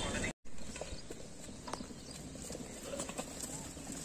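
Goats' hooves tapping and shuffling as a small herd moves about, a faint, irregular scatter of small clicks.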